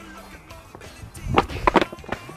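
Skateboard flip-trick attempt on stone patio paving: the deck and wheels hit the paving in a quick cluster of sharp clacks about a second and a half in, over quiet background music.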